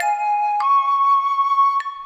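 A flute-like wind instrument plays a short jingle: one note, then a step up about half a second in to a higher note held long.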